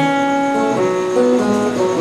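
Acoustic guitar playing with no singing: a run of held notes that change every half second or so.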